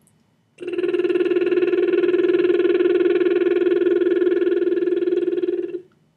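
A woman's voiced lip trill: lips buzzing while she sings one steady pitch, starting about half a second in and held for about five seconds before stopping just short of the end. The pitch stays as one even, unbroken line, the sign of breath let out in a controlled way.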